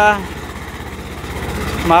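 Two-cylinder tractor engine running steadily under load as it pulls a plough through the soil, with an even low, rapid beat.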